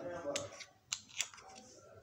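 Small plastic makeup jars clicking and knocking against a stone countertop as they are picked up and set down. There are a few sharp clicks in the first second and a half.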